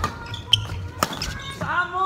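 Badminton rally on a wooden hall floor: three sharp knocks about half a second apart from racket strikes on the shuttlecock and players' shoes landing on the floor, then a player's shout near the end.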